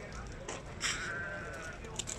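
A Sardi sheep bleats once, a single call of just under a second, over a background of market voices.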